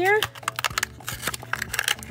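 Crinkly plastic-foil blind-bag packet rustling and crackling in quick, irregular crackles as it is squeezed and torn open by hand.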